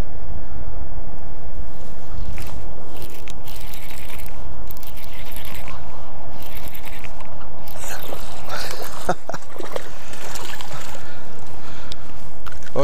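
Wind buffeting the microphone in a steady low rumble, with short bursts of splashing and scraping as a hooked largemouth bass is fought to the bank and swung out of the water near the end.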